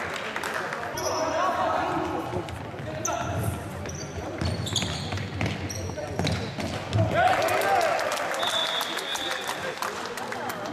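Indoor futsal play on a wooden sports-hall floor: the ball being kicked and bouncing in repeated sharp knocks, shoes squeaking briefly on the floor, and players' voices calling out.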